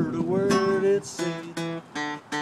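Acoustic guitar played alone, chords strummed in a rhythm with a fresh stroke about every half second.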